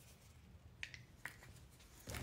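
Near silence: room tone with two faint small clicks, close together about a second in, as hands handle a tube of gel.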